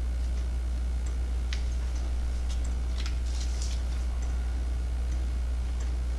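3D-printed plastic pendulum wall clock with a deadbeat escapement ticking faintly, a light click roughly every half second to second. A steady low hum runs underneath.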